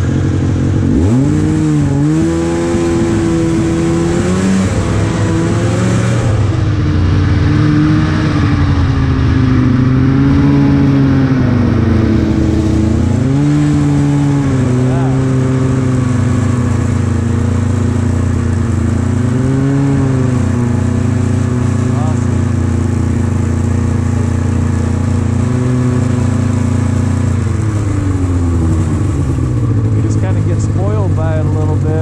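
Snowmobile engine, heard close from the sled carrying the camera. It revs up about a second in, rises and falls in pitch several times with the throttle, holds steadier for a while, then winds down near the end.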